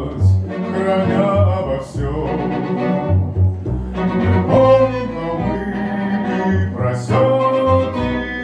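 Live chamber ensemble of violins and clarinet playing an instrumental passage of a slow song, with a bass line of held low notes under the melody.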